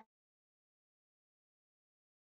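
Near silence: the call audio is muted or gated, with no sound at all.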